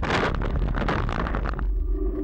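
A car striking a bicycle, picked up by the bike's handlebar camera: a sudden burst of crashing and clattering as the bike and rider go down onto the road, dying away after about a second and a half, over low wind rumble on the microphone.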